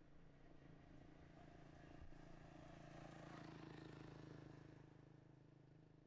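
Faint hum of a distant motor vehicle on the road, growing louder about three to four seconds in and then fading as it passes.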